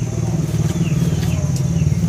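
A steady low engine rumble runs unbroken, with a faint steady high-pitched whine above it.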